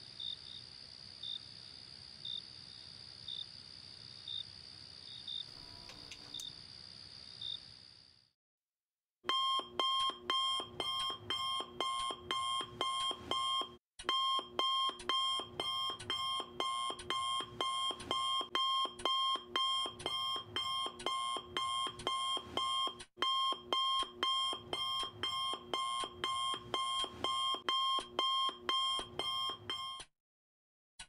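Crickets chirping steadily for about the first eight seconds, then a moment of silence. Then a smartphone alarm rings loudly in a fast repeating beep pattern, with two brief breaks, and stops right at the end as it is snoozed.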